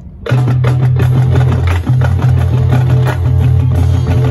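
Marching band playing, with drums and percussion over sustained low notes. A quieter passage breaks off about a third of a second in, and the full band comes in loudly and keeps playing.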